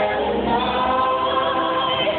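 A mixed choir of male and female voices singing into handheld microphones, one voice holding a long high note from about half a second in.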